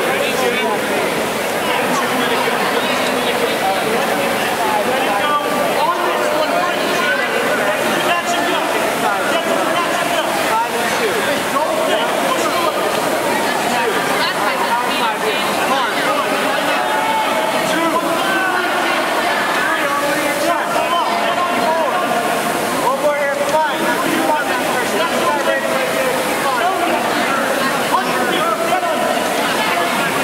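A steady din of many voices shouting and cheering from a crowd, with the rushing whoosh of Concept2 rowing-machine flywheels under it.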